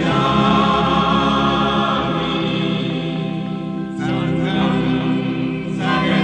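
Music with voices singing long held notes in chorus over a sustained low accompaniment. A new phrase begins about four seconds in.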